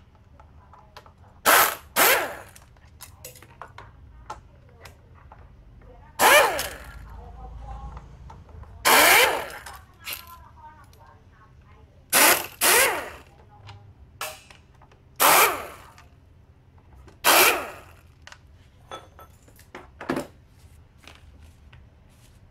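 Pneumatic impact wrench fired in about nine short bursts, two of them close together near the start, undoing the bolts on a Honda Vario 110 scooter's housing.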